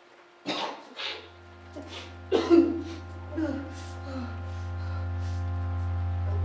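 A person coughing hard in several short fits, the loudest about two and a half seconds in. A low droning music note starts about a second in and swells steadily underneath.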